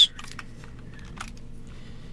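Light, irregular clicking from computer input, the keyboard and mouse being worked, over a steady low electrical hum.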